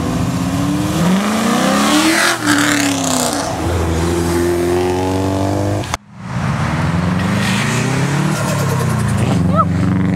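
Car engine revving as it accelerates past, its pitch climbing then falling away, with a rush of exhaust and tyre noise as it goes by. The sound cuts off suddenly about six seconds in. Then another car's engine revs up and down as it pulls away.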